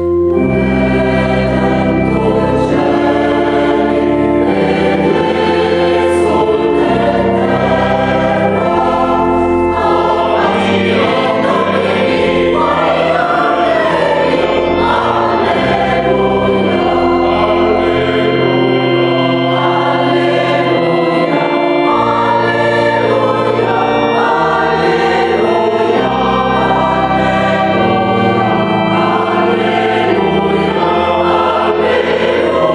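Mixed choir singing a sacred Christmas piece in full harmony, held chords changing over sustained low organ bass notes.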